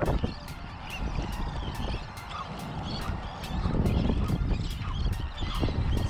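Wind buffeting the microphone, with a flock of seabirds calling faintly over the water.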